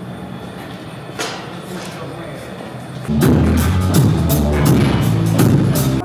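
Music with a singing voice: a quieter passage with a steady low hum and a few soft knocks, then about three seconds in much louder, with heavy bass and a regular beat.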